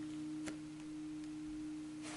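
A faint, steady low humming tone, with one soft click about half a second in.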